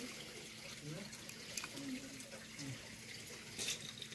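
Faint murmured voice fragments over a steady background hiss, with one brief rustle or scrape near the end.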